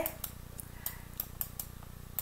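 A few faint, irregular light clicks and taps of a stylus on a graphics tablet as words are handwritten on screen.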